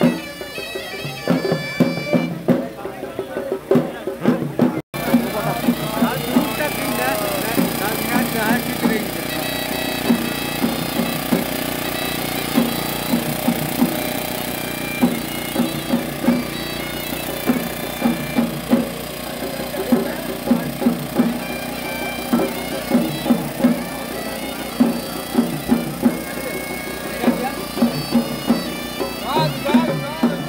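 Sri Lankan procession music: a shrill reed pipe, typical of the horanewa, plays a droning melody over steady, loud drum beats. There is a brief break about five seconds in.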